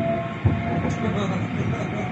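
Tram running on its rails, heard from inside the car: a continuous low rumble with a single knock about half a second in.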